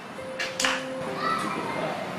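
Background film score with held sustained notes, and a short hiss about half a second in.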